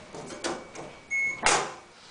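Small metal phone-cabinet door in an elevator car's control panel being handled and pulled open, with a sharp clack about one and a half seconds in. A short high beep sounds just before the clack.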